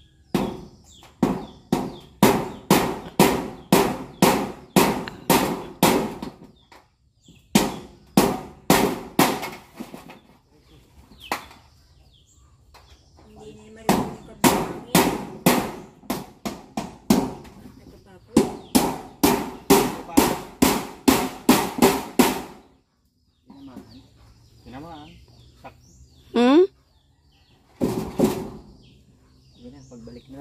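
Hammer driving nails into corrugated metal roofing sheets, fastening them down so the wind can't lift them. The strikes come in four quick runs of about two to three a second, with short pauses between.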